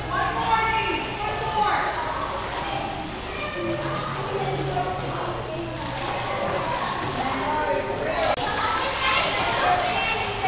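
Many children talking and calling out at once, over water splashing from a swimmer's kicking strokes.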